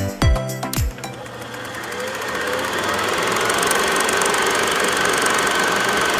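Music with a steady beat stops about a second in. A film projector sound effect fades in and runs steadily: rapid mechanical ticking over a hiss.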